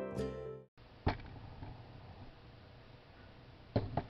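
Background music of plucked strings that cuts off under a second in, leaving faint room hiss with a sharp click just after a second and a few more clicks near the end.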